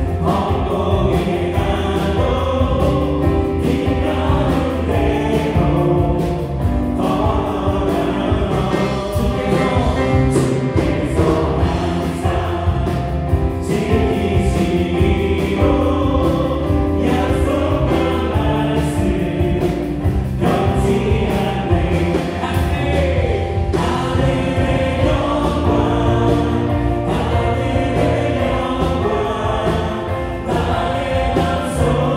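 Live worship band playing a gospel song: electric guitar, keyboards, bass guitar and drums, with voices singing over them.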